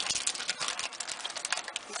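Crafting supplies being handled by hand, with a dense run of small, irregular clicks and crinkles like a plastic stamp package being picked up.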